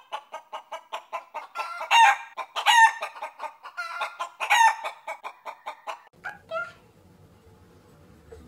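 Chicken clucking rapidly, several clucks a second, with three louder squawks along the way; the clucking stops a little over six seconds in, leaving only a faint hum.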